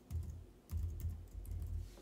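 Typing on a computer keyboard: a short burst of keystrokes, a brief pause, then a longer quick run of keys.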